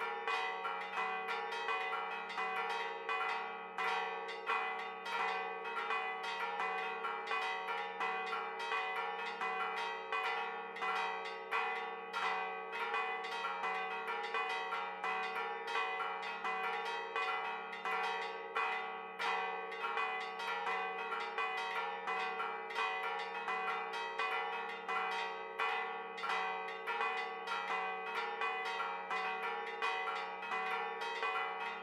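A peal on all four church bells, pitched E, B-flat, A-flat and G-flat, with the three large ones cast in 1647, 1677 and 1827. Strikes come several times a second and overlap one another, over a continuous hum of the bells ringing on.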